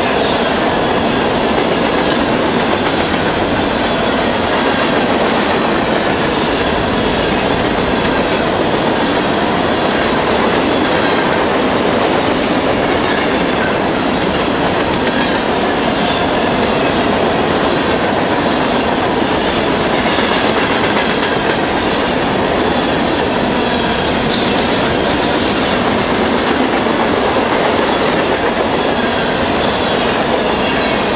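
Covered hopper cars of a long freight train rolling past close by: a loud, steady rumble of steel wheels on rail with a running clickety-clack over the rail joints.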